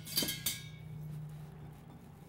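Metal kitchen utensils clinking in a stainless-steel utensil holder as they are pulled out: two sharp, ringing clinks in quick succession near the start.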